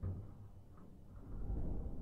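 A deep boom at the start, then a low rumble that swells again about a second and a half in.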